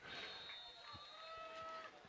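Faint outdoor football-stadium ambience: a low hiss with a few faint, drawn-out distant tones.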